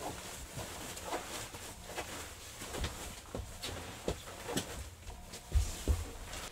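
Bedding being handled: a puffy comforter insert and a linen duvet cover rustling and swishing as they are rolled up together on a bed, with irregular soft pats and a louder soft thump near the end.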